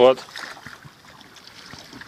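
Faint wash of water around a wooden rowboat being rowed, with a few light knocks from the oars working on their rope-tied thole pins.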